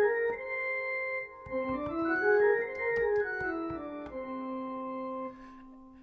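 Whole tone scale played on a keyboard, an octave divided into six equal whole steps. A rising run tops out on a held note, then a second run goes up and back down and ends on a long low note that fades out.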